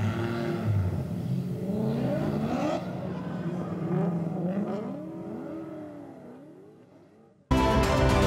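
Drift car engines revving up and down in repeated rising and falling sweeps, fading away over the last few seconds. Music cuts in abruptly just before the end.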